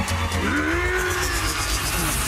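Cartoon sound effect of a fast dash: a zooming whoosh over a low rumble, with a tone that rises and then falls from about half a second in.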